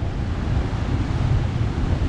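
Wind buffeting the microphone in a steady low rumble over the rush of rough surf breaking below.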